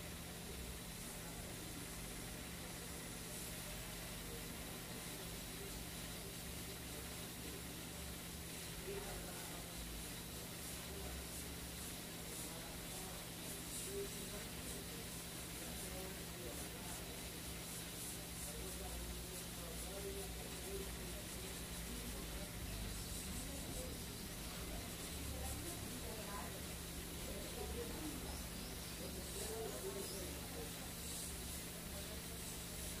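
Hot air rework station blowing a steady hiss of hot air onto a phone board's USB-C charging connector, set to an airflow of 30 at 480 °C to melt the solder and free the connector. A low steady hum runs underneath.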